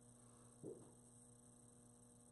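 Near silence: room tone with a faint steady mains hum, broken once, just over half a second in, by a single short spoken word.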